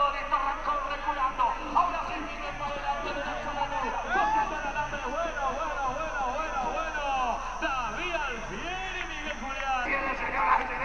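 Many voices at once: spectators at a rodeo shouting and talking over one another, with no single clear speaker, over a steady low hum.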